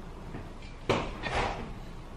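A single sudden knock about a second in, followed by a brief spell of handling noise.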